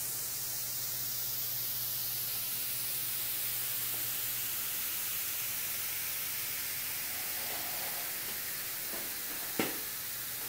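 Steady hiss with a faint low hum that fades out about six seconds in, and a single short click just before the end, while a hot-wire foam cutter slices slowly through extruded polystyrene foam.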